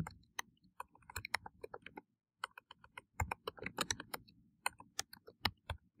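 Computer keyboard being typed on: a run of quick, irregular key clicks with a short pause about two seconds in.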